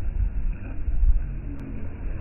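Wind buffeting the phone's microphone: a loud, gusty low rumble that swells and drops irregularly.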